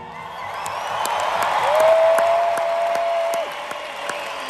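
Large concert crowd cheering and applauding as the song ends. One long held note rises above the crowd noise about halfway through.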